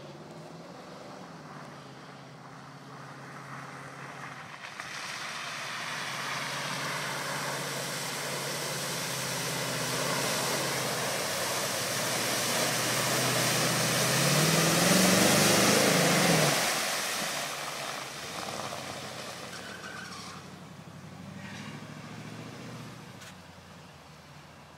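A Chevrolet K5 Blazer's engine revs under load as the truck plows through a water-filled mud pit, with muddy water spraying and splashing. Engine and splash grow louder to a peak of rising revs about two-thirds of the way in, then fade as the truck pulls out of the pit.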